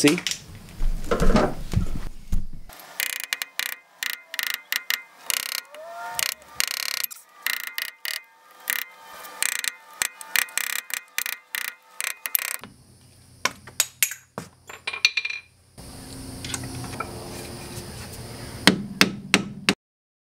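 Rapid metal-on-metal tapping and clicking of a sharpened screwdriver tip worked against a BMW E30's front wheel hub, prying at the dust cap and the axle nut's locking tab; it sounds like a tiny jackhammer. The tapping stops and restarts a few times, with a few sharper clicks near the end.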